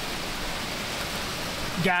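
A hailstorm: an even, steady hiss of hail and rain coming down, heard from inside a car.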